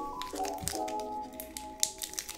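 Background music playing held, steady synth chords that change in steps. A few faint crinkles of a foil booster pack being handled come near the end.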